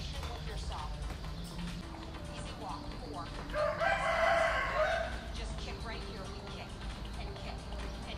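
A rooster crowing once, starting about three and a half seconds in and lasting under two seconds.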